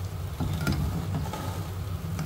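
Potato and rice-flour fritter balls deep-frying in hot oil, a light sizzle and crackle, with a few sharp ticks about half a second in, over a steady low hum.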